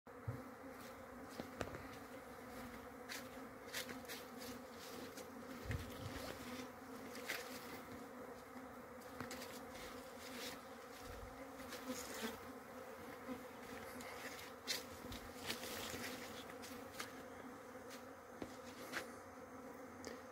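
Many bees buzzing in a faint, steady hum as they forage on flowering coffee blossoms, with scattered brief clicks.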